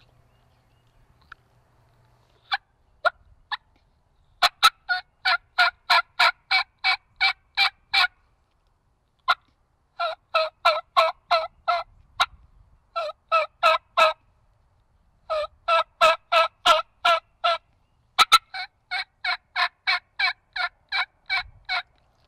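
Woodhaven Ninja Venom three-reed diaphragm mouth call, with a snake-tongue top reed, blown to imitate a hen turkey: a few single notes, then five runs of rhythmic yelps, about three a second, with short pauses between the runs.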